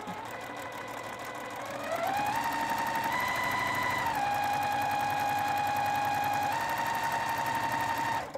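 Juki TL-2010Q straight-stitch sewing machine running as fabric patches are chain-pieced, a steady motor whine with the needle's rapid stitching. The machine starts slowly and speeds up about two seconds in, then runs at a steady fast pace with slight changes in speed.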